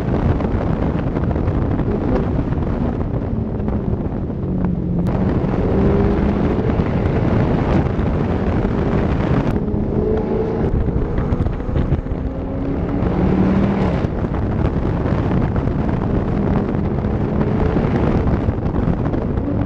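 Sports car engine heard from a camera mounted on the car's body while driving, its note rising and falling, with wind rushing over the microphone.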